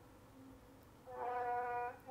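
A woman's voice holding a single steady hum on one level pitch for just under a second. It starts about a second in, after near silence.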